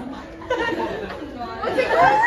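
Chatter of a group of girls, several voices talking over one another in a room.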